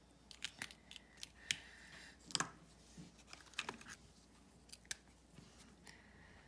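Plastic pens being picked up and handled on a desk: a scattered run of sharp clicks and taps, the loudest a close pair about two and a half seconds in.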